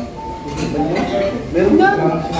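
Cutlery clinking against plates and bowls at a dining table, under the chatter of several people talking.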